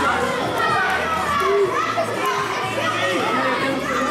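Several children's voices calling and shouting over one another during a youth handball game, echoing in a large sports hall.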